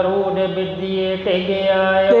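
A man's voice chanting in long, drawn-out held notes that glide slowly in pitch, the sung recitation style of Sikh katha, over a steady low drone tone.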